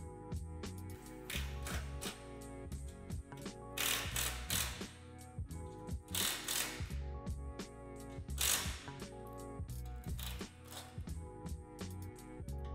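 A RIDGID cordless driver runs in about five short bursts, each about a second long, driving a nut onto a bolt. Background music with a steady beat plays throughout.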